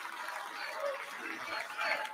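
Large arena crowd cheering, a haze of many voices and scattered shouts that swells near the end.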